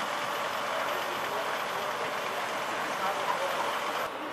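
Charter bus idling at the curb with its door open, a steady engine and fan noise, with voices faint in the background.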